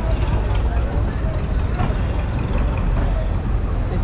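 Street noise at a busy bus park: a steady low rumble of road vehicles, with voices of people talking in the background.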